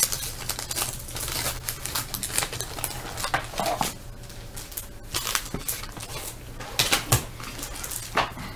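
Wax paper wrapper of a trading card pack crinkling and tearing as it is opened, with irregular rustles and clicks as the cards are handled.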